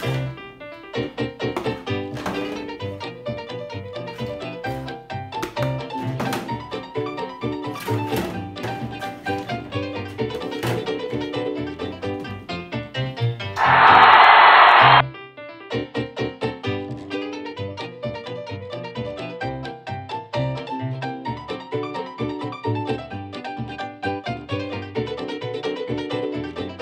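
Instrumental background music with a steady beat and piano. About halfway through, a loud noisy sound effect lasts about a second and a half, then stops suddenly.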